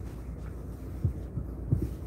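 Steady low rumbling hum of machinery, with a few short, dull low thumps about a second in and again near the end.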